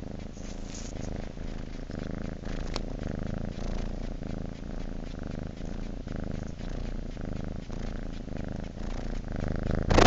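Calico domestic cat purring steadily.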